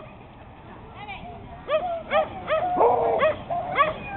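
A dog barking repeatedly in short, yelping barks, about two or three a second, starting about a second in.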